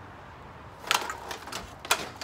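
A sliding screen door being fitted back onto its track after falling off: a few light clicks and knocks from its frame. The sharpest come about a second in and near the end.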